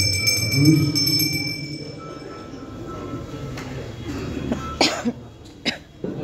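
A temple bell rung rapidly during aarti, ringing over voices and stopping about two and a half seconds in, followed by two short coughs near the end.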